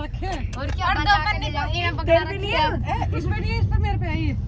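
People talking over a steady low rumble.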